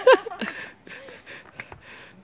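Snow brush sweeping snow off a car: a run of short swishing strokes, about three a second, with a few light knocks of the brush on the car. A short laugh opens it.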